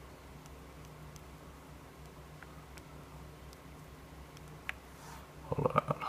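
Quiet room tone with a faint steady low hum and a few faint, scattered ticks. Near the end a man starts speaking.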